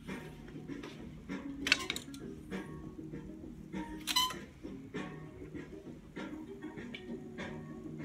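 Background music playing, with a few sharp clicks of hangers sliding along a metal clothes rail as garments are pushed aside, about two seconds in and again, louder, about four seconds in.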